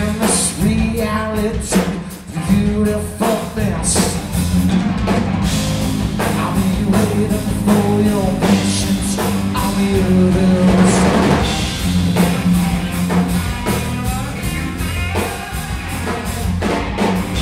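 A rock trio playing live: an electric guitar, bass and drum kit, with a man singing over them.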